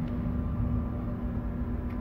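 Steady low rumble and hum of a cargo ship's machinery heard on the bridge while the ship is under way, with a faint click near the end.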